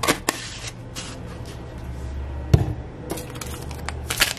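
Clicks and knocks of a plastic adobo seasoning shaker being handled and set down after seasoning the beans: a few sharp clicks at the start and a loud knock about two and a half seconds in, over a steady low hum.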